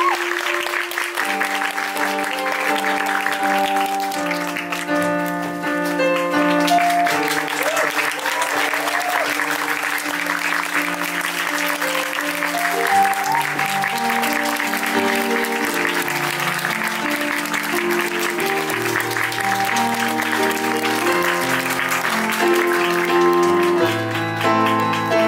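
Audience applauding steadily over instrumental curtain-call music of held notes, with lower bass notes coming in about halfway through.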